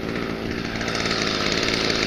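Small petrol engine of a garden power tool running steadily, growing slightly louder.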